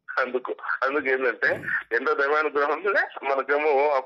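Speech: a man talking on without pause, in an Indian language the recogniser did not write down.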